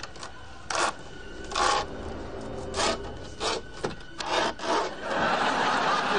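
A series of short scraping noises, five or six of them about a second apart. Studio audience laughter starts near the end.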